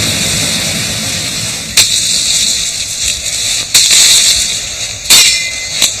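Rainforest ambience: a steady high hiss, with four sharp cracks spread through it, the loudest about five seconds in.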